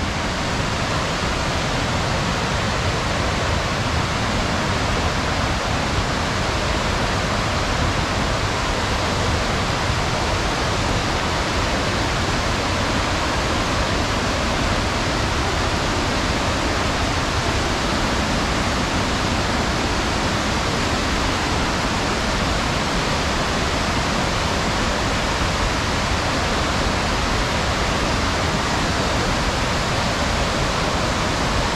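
Loud, steady rush of a waterfall's falling water, an even wash of noise with no let-up.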